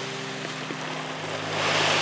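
Crushed mineral granules pouring from a bag onto loose soil, a dry hiss that grows louder toward the end, over a steady low hum.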